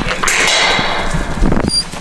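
Livestock guardian puppy crying harshly for about a second as it fights the leash during its first leash training. The owner takes this kind of yelping for protest at the restraint, not pain. A brief high ping sounds near the end.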